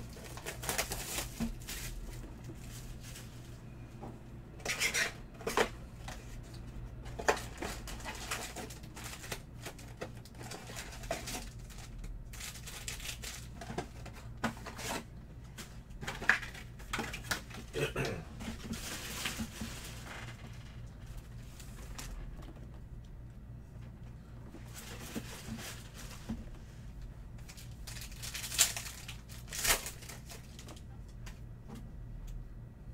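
Plastic shrink-wrap and cardboard of a Panini Select basketball hobby box being torn and opened, with irregular crinkling and rustling as the card packs are handled. Near the end, a pack wrapper is torn open with a louder crinkle.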